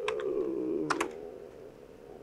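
Computer keyboard keystrokes: a few quick key taps, most of them in the first second, as a shell command is typed into a terminal.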